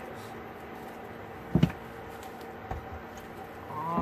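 A ceramic rolling pin rolls out corn tortilla dough on a plastic-wrapped wooden cutting board. There is one sharp knock about one and a half seconds in and a lighter one near three seconds, over the steady hum of a window air conditioner.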